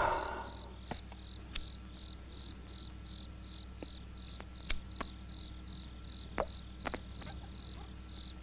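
A cricket chirping steadily at night, a regular high chirp about three times a second, over a low steady hum, with a few faint scattered clicks.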